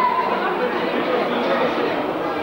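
Many people talking at once: a steady babble of overlapping conversation, with no single voice standing out.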